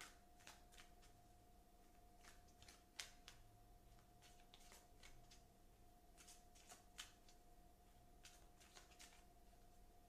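Oracle card deck being shuffled, faint: irregular soft flicks and clicks of cards, with sharper snaps about three and seven seconds in, over a faint steady hum.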